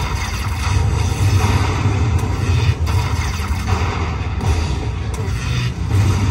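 Aristocrat High Stakes slot machine playing its win roll-up music while the bonus total counts up, a steady, dense run of electronic sound over a low rumble.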